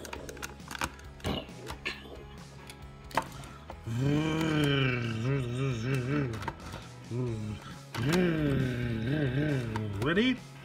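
Hard plastic clicks and knocks as a toy hauler's ramp is raised and set, then a man's voice making revving engine noises in two stretches, about four and eight seconds in, the pitch swooping and wobbling.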